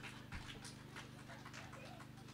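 Low, steady electrical hum from the stage sound system, with a few faint scattered clicks over it.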